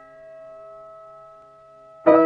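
Piano chord from a sped-up, pitched-up nightcore piano ballad intro, held on the sustain and slowly fading between strikes.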